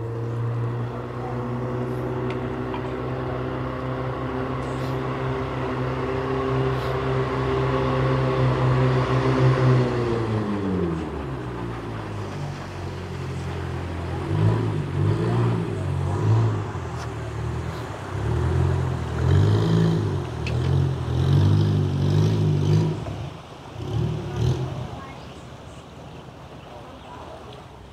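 A boat engine running at a steady pitch, then slowing, its pitch falling about ten seconds in; after that it comes in uneven surges.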